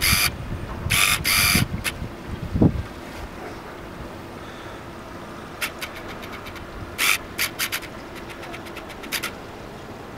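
Gusting blizzard wind buffeting the microphone for the first few seconds, with rough low rumbling and two crackling bursts about a second in. Then a steadier, quieter wind background with a faint constant hum, broken by a few short clusters of sharp ticks.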